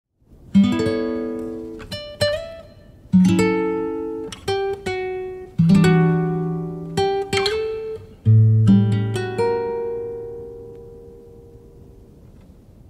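Solo acoustic guitar song intro: four chords about two and a half seconds apart, each left to ring, with a few single plucked notes between them. The last chord fades out slowly.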